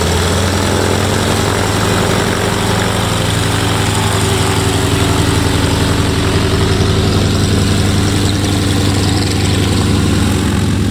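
Biplane's radial engine idling steadily on the ground, its propeller turning over in a low, even drone.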